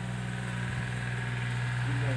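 A steady low motor hum that grows slightly louder over the two seconds.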